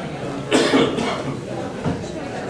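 A person coughs once, loudly, about half a second in, over the murmur of voices in the room.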